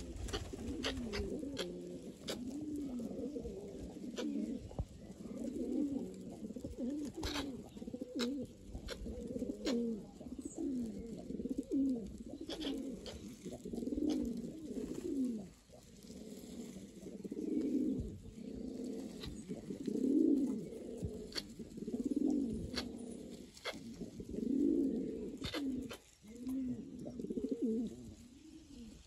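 Domestic pigeons cooing over and over, each low coo rising and falling, repeating every second or two, with a few sharp clicks among the calls.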